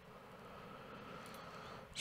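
Near silence: a faint steady hiss of room tone, with no distinct sound.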